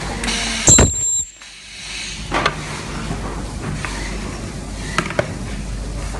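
Ultrasonic plastic welder firing its horn onto a plastic frame: a loud, high-pitched screech with hiss lasting about half a second, cutting off sharply. A shorter burst of noise follows a second later, and two sharp clicks come near the end.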